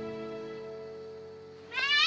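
Soft, sustained background music fading away, then near the end a child's voice calls out "Mom!" once, rising then falling in pitch. The call is the loudest sound.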